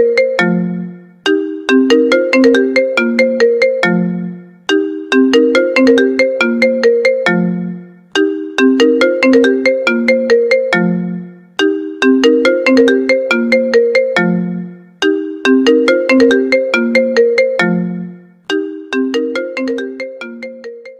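Apple iPhone ringtone playing on a loop. A short melody of quick, bright notes ends on a low note and repeats about every three and a half seconds.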